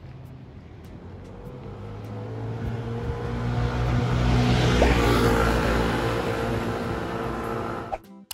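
A car passing along the street: engine and tyre noise that swells to its loudest about halfway through, then fades.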